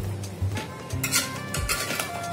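A metal spoon stirring and scraping thick chicken-and-marinade mixture in a steel pot, with a few short clinks of spoon against pot, over background music.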